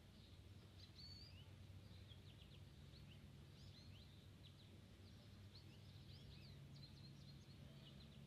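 Near silence: quiet outdoor ambience with small birds chirping faintly and often, over a low steady hum.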